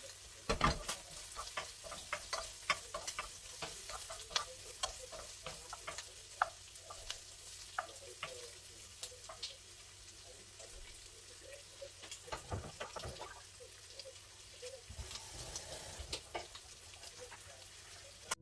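Sliced food frying faintly in a nonstick frying pan on a gas stove, with frequent clicks and scrapes of a wooden spatula stirring it against the pan and a louder knock about half a second in.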